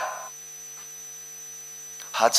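Steady electrical mains hum with no other sound, after the echo of a man's voice fades out in the first moment.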